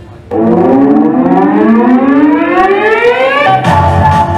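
A siren-like tone sounds in the backing music. It starts abruptly and rises steadily in pitch for about three seconds, then cuts over into dance music with a beat near the end.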